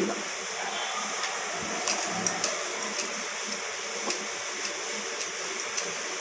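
Wooden rolling pin rolling out chapathi dough on a round rolling board: a steady soft rubbing hiss with light taps about every half second as the pin goes back and forth.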